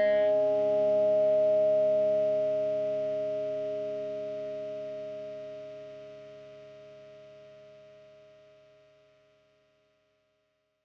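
Last chord of a fuzz-distorted electric guitar, a Cort/Manson M-Jet with built-in Zvex Fuzz Factory played through a Marshall MG100HDFX amp, left to ring out. It sustains as one steady chord and fades slowly away, dying out near the end.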